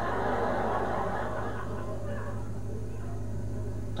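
Studio audience laughing. The laughter is loudest at first and dies away over about two to three seconds, leaving a steady low hum.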